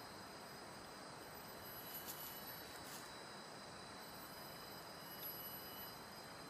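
Faint tropical rainforest ambience: a steady low hiss with thin, unbroken high-pitched insect drones, and a couple of faint ticks about two and three seconds in.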